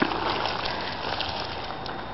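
Footsteps crunching on a gravel path under a steady rushing noise, with a few faint ticks.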